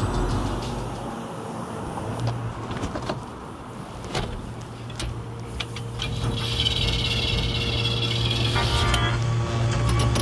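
Street and car noise with a few sharp clicks and knocks. From about halfway through a steady low hum builds, and music comes in over it.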